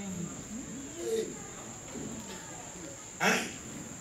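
A lull between a preacher's phrases: faint voices murmur in a church hall under a steady high-pitched tone, and a short, louder voice sound comes about three seconds in.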